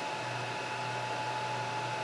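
Steady hum of an electric fan running, with a faint constant high whine.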